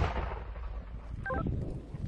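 Rumble of a mortar shot fading away just after the round leaves the tube, with a brief electronic beep about halfway through.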